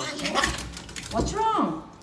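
A small dog gives a short whine that rises and then falls in pitch, just past the middle.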